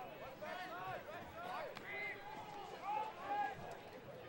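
Several distant voices of lacrosse players and spectators calling and shouting across the field, faint and overlapping.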